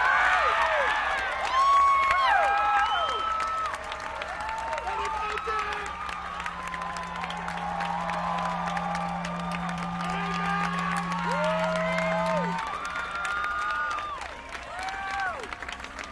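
A crowd cheering, whooping and clapping after a song, with many overlapping shouts. It is loudest in the first few seconds and thins out toward the end. A steady low tone runs through the middle and cuts off suddenly.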